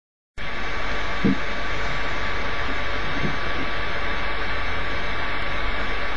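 Steady electronic hiss with a thin, high whine, the background noise of a home webcam recording. It cuts in abruptly just after the start and stays level, with a couple of faint, brief low sounds over it.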